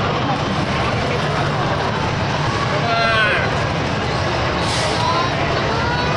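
Busy arcade din: steady background voices and game-machine noise, with a short voice or machine jingle rising above it about three seconds in.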